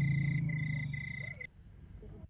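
Night-time forest ambience: a high insect chirp repeating in short even pulses over a low steady hum that fades. Both cut off suddenly about one and a half seconds in, leaving only faint hiss.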